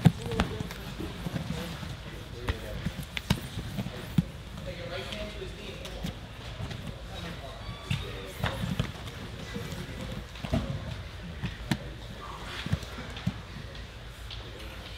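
Bodies, hands and feet thudding and slapping on foam grappling mats during a no-gi jiu-jitsu roll: irregular dull thumps throughout, the loudest right at the start, with indistinct voices of other people in the room.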